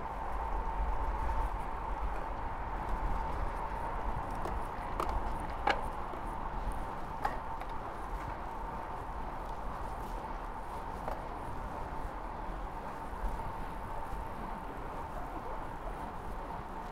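Road bike coasting downhill: wind rush on the microphone with road noise, and a steady high buzz from freewheeling rear-hub ratchets. A few sharp clicks come about five to seven seconds in.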